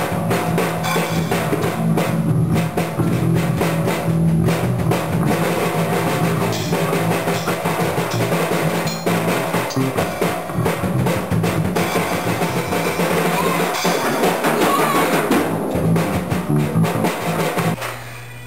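Electric bass guitar and a drum kit played together live in a room: steady low bass notes under continuous drumming with kick, snare and cymbals.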